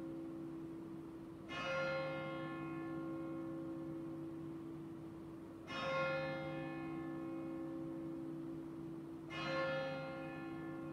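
A single church bell tolling slowly: three strikes about four seconds apart, each ringing on and fading until the next.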